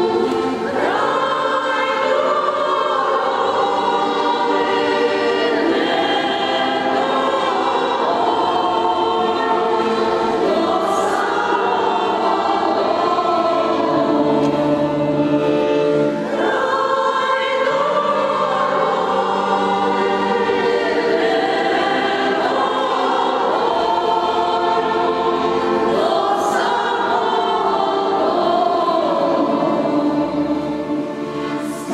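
Ukrainian women's folk choir singing in harmony in long, held phrases, with a short break between phrases about halfway through.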